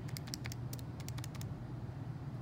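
Keys of a TI-84 Plus graphing calculator being pressed one after another, a run of short light clicks.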